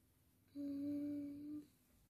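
A young girl's closed-mouth hum, a hesitant "mmm" held on one steady pitch for about a second, starting about half a second in, while she searches for the words she wants to say next.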